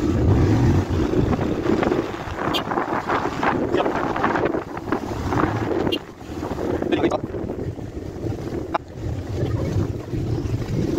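A vehicle running along a road, its low rumble mixed with wind buffeting the microphone.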